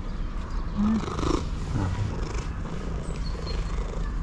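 Orange tabby cat purring steadily while being stroked, with a few short calls about one to two seconds in.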